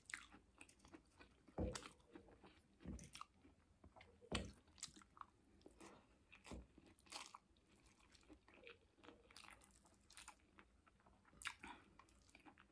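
Faint, close-miked chewing and mouth sounds of a person eating rice and sautéed vegetables by hand, with irregular soft clicks and smacks and two louder knocks, the first a little under two seconds in and the second a little over four seconds in.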